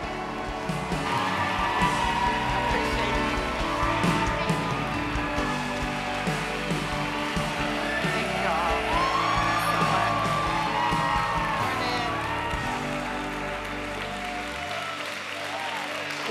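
Live band with electric guitar and keyboard playing while a crowd cheers, whoops and applauds. The bass drops out shortly before the end.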